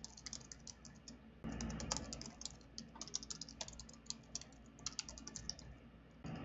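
Typing on a computer keyboard: quick runs of light keystrokes with short pauses, as a terminal command is typed.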